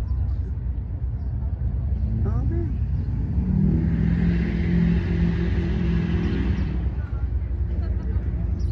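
An engine running steadily, heard for about three seconds in the middle as it comes up and then fades away over a constant low rumble.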